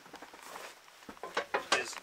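A few light knocks and clicks as a person steps up through a camper trailer's doorway onto its floor, with a voice briefly near the end.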